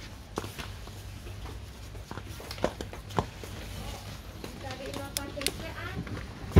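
Shop background noise, which the speaker calls a bit noisy: a steady low hum with scattered light clicks and knocks, and faint voices about five seconds in.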